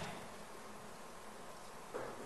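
Faint steady background hiss with no distinct sound in it.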